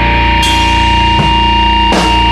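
Loud music: a held low bass drone and a steady high tone, with a few short percussive hits.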